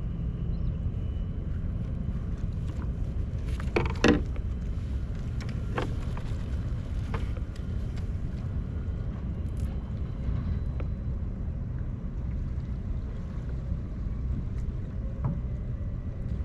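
Steady low rumble of wind on the microphone, with a few light clicks and knocks of fishing tackle being handled, the sharpest about four seconds in.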